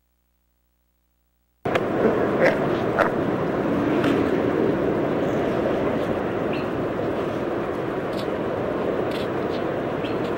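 City street ambience cutting in abruptly after silence, about a second and a half in: a steady rush of traffic and street noise with a few sharp clicks and knocks.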